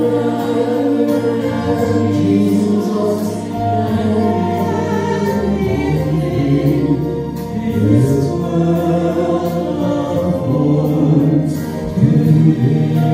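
A man and a woman singing a worship song together into microphones, in held, steady phrases.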